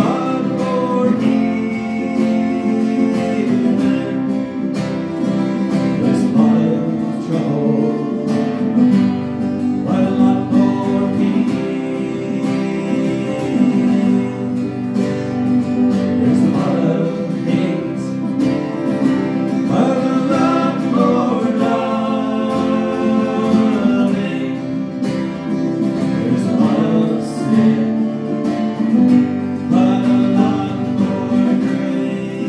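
Two acoustic guitars strummed in a steady rhythm while men sing a worship song into microphones.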